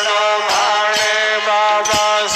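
Devotional aarti hymn sung to a wavering melody, with percussion strikes about twice a second.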